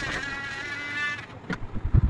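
Culiau Customizer electric engraving pen buzzing with a high whine as its tip cuts into a clay house, stopping a little over a second in. A few knocks from handling follow near the end.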